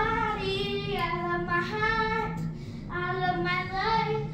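A child singing a melody in held notes that glide from pitch to pitch, with short breaths between phrases.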